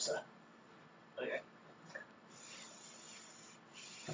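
Socked feet sliding down a painted wall, a faint rubbing hiss lasting about a second and a half in the second half, as a handstander's legs slide from a straight wall handstand down into a tuck. A brief vocal sound comes about a second in.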